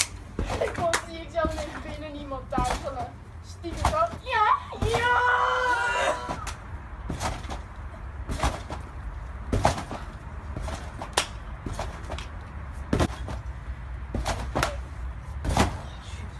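Trampoline bouncing: repeated thuds of a jumper landing on the mat, about one every second and a half, as flips are thrown. Excited shouting and one long yell from the boys in the first half.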